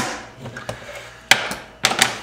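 Handheld hand-cranked can opener cutting the lid off a tin can: three sharp metal clicks, one at the start, one past the middle and one near the end, with fainter scraping between.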